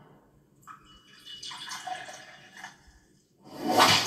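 Liquid poured from a silver pot into a porcelain cup: a faint trickling splash starting about a second in and lasting about two seconds. Near the end a much louder sound swells up, heard through a television's speaker.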